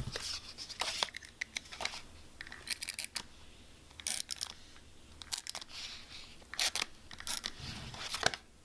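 Paper and stationery being handled on a desk: sheets rustling and being pressed down, with several short spells of quick rasping clicks a second or so apart.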